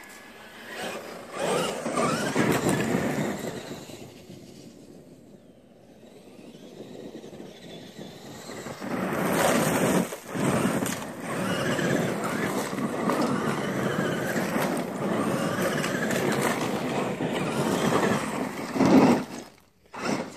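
Traxxas E-Maxx electric RC monster truck driving over dirt and gravel: a motor and gear whine that rises and falls with the throttle, over the noise of the tyres on the ground. It fades for a few seconds around the middle as the truck goes farther off, then comes back loud for most of the second half and cuts out just before the end.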